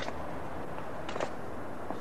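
Steady background ambience of a large, hard-walled hall, with a few faint short clicks.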